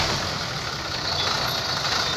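Ashok Leyland 2214 truck's diesel engine idling steadily.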